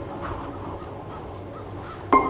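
Several short animal calls from wildlife at a kill.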